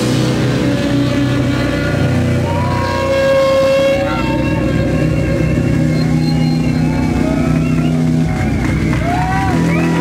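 Live heavy jazz-metal band of baritone saxophone, bass and drums holding sustained, droning low notes after a crash, without a drum beat. Gliding high pitched tones rise and fall near the end.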